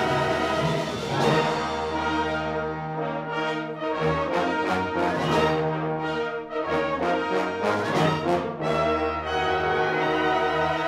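Concert wind band playing loud sustained brass and woodwind chords over a low bass line, with a series of sharp accented attacks through the middle.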